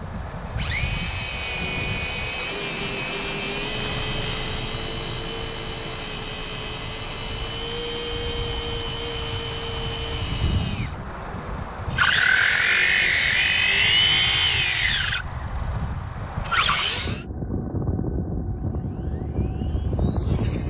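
High-pitched electric motor whine from RC drag cars. A long steady whine spins up and holds for about ten seconds. A shorter whine then rises and falls for about three seconds, and a brief burst follows a couple of seconds later.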